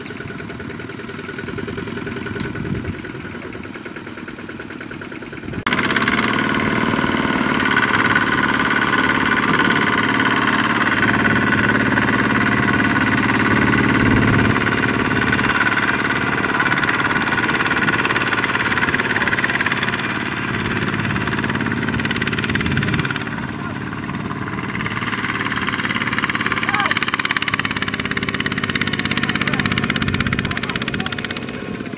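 Kubota ZT120 two-wheel tractor's single-cylinder diesel engine running under load as it strains to drag a loaded trailer out of sticky mud. It jumps abruptly louder about six seconds in and stays at that higher level, easing a little for a few seconds later on.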